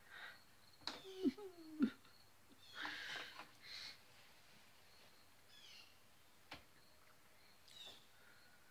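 A woman's brief wordless vocal sounds: a few short falling hums about a second in, then a breathy rush of air around three seconds. A small sharp click comes later. All of it is faint.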